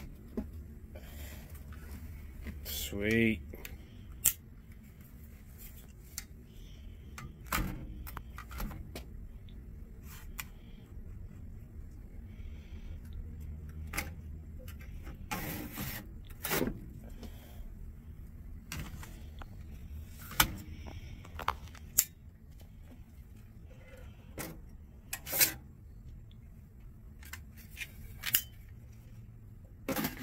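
Metal and plastic hard-drive caddies being pulled out of and pushed back into a server tower's drive bays: scattered clicks, clacks and rattles, with a brief rising pitched sound about three seconds in.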